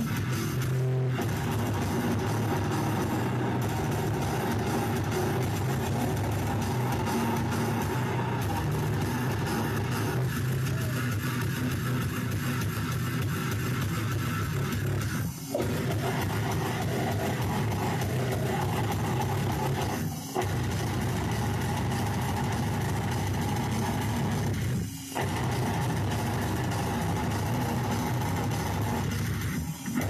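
Live goregrind band playing: distorted electric guitars and a drum kit, loud and dense. In the second half the band stops short several times, about every five seconds.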